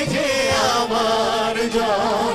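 Live group of singers singing together with band accompaniment, the voices holding long, wavering notes over a steady low drone.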